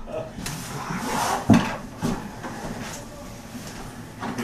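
A few light knocks and clatters of the black drawing box being handled on a table, the sharpest about one and a half seconds in.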